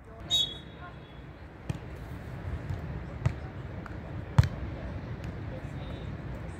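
A few sharp smacks of hands and forearms striking a beach volleyball, the loudest about four and a half seconds in.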